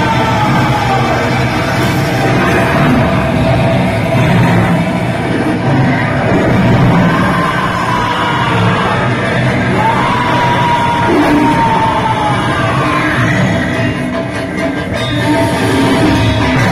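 Loud, dramatic soundtrack music of a pandal light-and-sound show, played over loudspeakers, with long sliding melodic lines through the middle.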